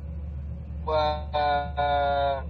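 A man's voice drawing out a long, level-pitched 'wa…' in three held stretches starting about a second in, over a steady low electrical hum that fills the opening second.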